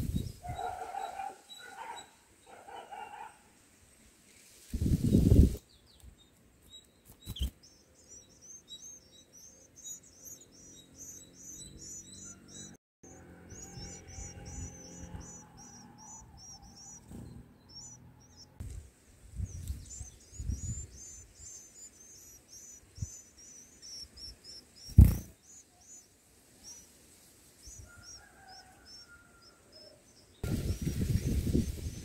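Long runs of rapid, high, thin chirps from white-eyes at a nest of begging chicks. A few dull thumps break in, the loudest a little before the end.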